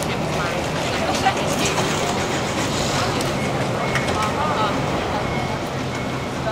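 Volkswagen Beetle Turbo's turbocharged four-cylinder engine running with a steady low hum, under outdoor background voices and traffic noise. A short high beep sounds about four seconds in.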